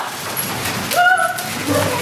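Middle-school students in a classroom commotion, with one child's high, drawn-out call about a second in, held for about half a second.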